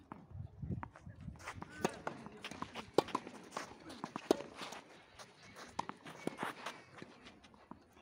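Tennis balls struck by racquets in a doubles point on a clay court: a serve, then a short rally of sharp hits about a second or so apart, the loudest in the first half. Shoes scuff and slide on the clay between the hits.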